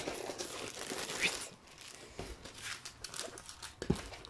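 Plastic packaging crinkling and rustling as a rolled diamond painting canvas is handled, with scattered small clicks and a couple of light knocks.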